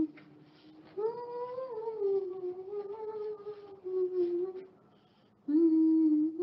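A woman humming a slow, wordless tune to herself, holding long notes that slide gently up and down. She starts about a second in, pauses near the end, and picks up again just before it ends.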